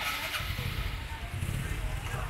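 A motor vehicle's engine running close by, a steady low sound, with faint voices around it.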